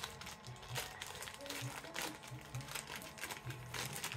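Thin clear plastic bag crinkling in a run of short, irregular crackles as a pair of reading glasses is handled and slipped into it.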